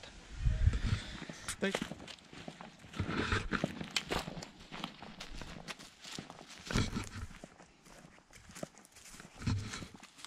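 Footsteps of a person in boots walking over dry pine needles and leaves on dirt, each step a short crunch at an uneven walking pace.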